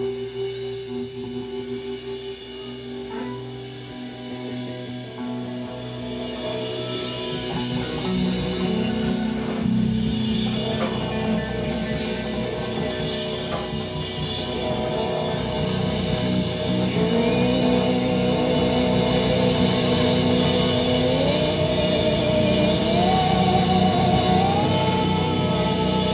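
Live rock band playing an instrumental passage on electric guitars and drum kit. It builds in loudness over the first half, and near the end long held notes step up in pitch.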